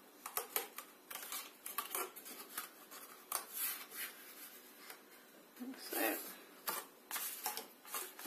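Cardstock being handled and rolled down onto its tape by hand: an irregular string of short, light rustles and taps.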